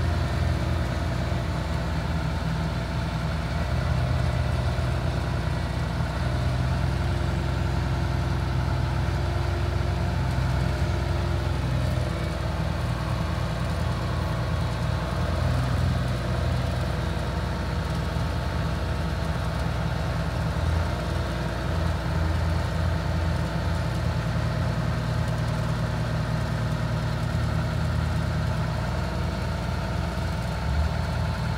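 Diesel engine of a tandem-axle silage dump truck running steadily at idle while its dump box is raised to tip a load of chopped hay.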